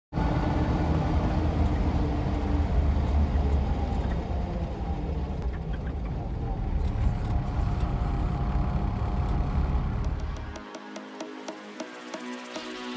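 Vehicle engine and road rumble heard from inside the cabin while driving. The low rumble cuts off sharply near the end as music comes in.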